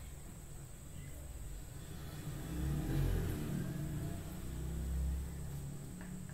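A low rumble that swells about two seconds in and eases off shortly before the end, over a faint steady high whine.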